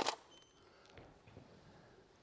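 A single camera shutter click right at the start, fired during a flash-lit studio shoot, followed by quiet room tone.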